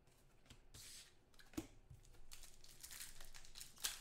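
Foil wrapper of a 2014 Panini Contenders football card pack being torn open and crinkled by hand: a run of faint rustles and crackles that grows denser toward the end, with one sharp tap about one and a half seconds in.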